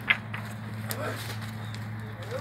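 Faint voices in the background over a steady low hum, with a couple of short clicks.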